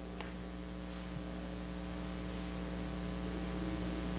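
Steady low electrical hum, slowly growing a little louder, with a faint tick just after the start and another about a second in.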